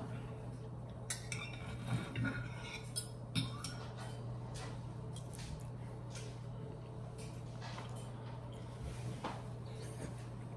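Metal knife and fork clinking and scraping on a ceramic plate while cutting an omelette, a few light clinks in the first few seconds, then quieter. A steady low hum runs underneath.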